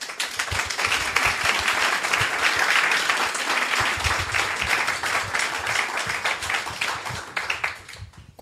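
Audience applauding, a dense patter of many hands clapping that dies down near the end.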